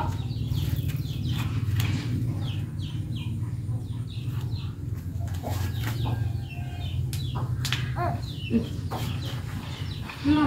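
Scattered faint chicken clucks and chirps over a steady low hum, with one short falling call a little past eight seconds.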